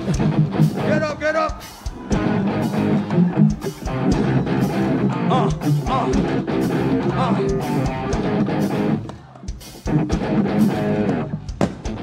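Live heavy rock band playing: electric guitars and a drum kit with a steady beat, and a voice rising and falling over them. The music thins out briefly about nine seconds in, then comes back in full.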